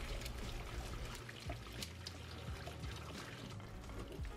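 Boiled potatoes, carrots, celery and onion and their hot cooking water being poured into a plastic colander to drain: a steady trickling pour with a few light ticks of vegetable pieces.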